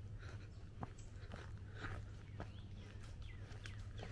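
Faint footsteps clicking and scuffing on bare rock slabs, with a few faint bird chirps.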